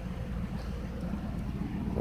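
Steady low background hum with no distinct sound event.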